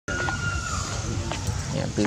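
People talking in the background over a low, steady rumble, with a thin, slightly falling whistle-like tone in the first second.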